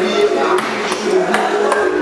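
Table tennis rally: a ball clicking sharply off paddles and table about every half second, over background music.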